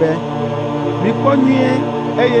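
Steady, sustained background music, with a voice speaking over it for a moment about halfway through.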